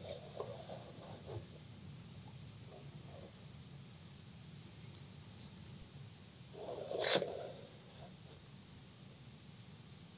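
Quiet handling noise as the hand-built circuit board is moved about on a cutting mat, with one short, louder knock about seven seconds in.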